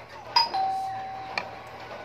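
Electronic doorbell chime: a sharp click, then one steady tone held for just under a second, ending with a second click.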